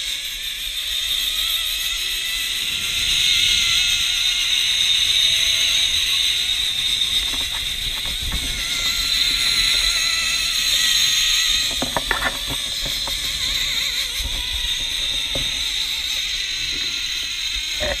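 Zipline trolley pulleys rolling along a steel cable: a steady high-pitched whir that grows louder in the middle of the run and eases off after a few clicks about twelve seconds in.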